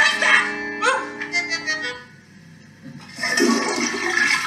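A short musical phrase of held notes, then after a brief lull a toilet flushing with a rushing of water, starting about three seconds in.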